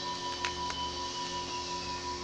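Soft ambient background music of steady held tones, with a couple of faint clicks about half a second in from oracle cards being shuffled in the hands.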